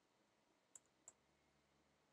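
Near silence with two faint computer-keyboard keystrokes, the first a little under a second in and the second about a third of a second later.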